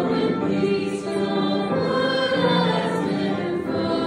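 A hymn sung by a choir in long held notes that move from pitch to pitch without a break.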